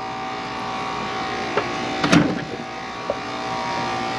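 Outdoor air-conditioner condenser units running: a steady mechanical hum of several held tones, with a few light ticks and a short louder noise about two seconds in.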